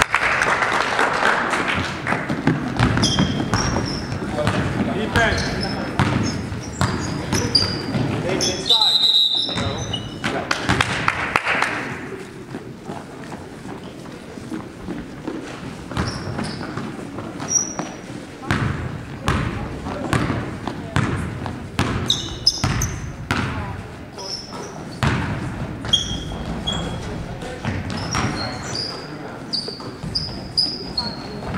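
Basketball game sounds echoing in a gymnasium: a ball bouncing on the hardwood floor, sneakers squeaking, and voices of players and spectators. The sound breaks off briefly about nine seconds in and is quieter afterwards.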